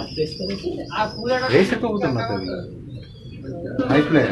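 High-flyer domestic pigeons cooing in their wire cages, with a man's voice over them.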